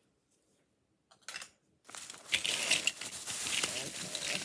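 Plastic bags crinkling and small metal pin-back buttons and pins clicking against one another as a pile of them is pulled out and spread across a tabletop. After about a second of near silence and one short rustle, the crinkling and clicking start about two seconds in and carry on steadily.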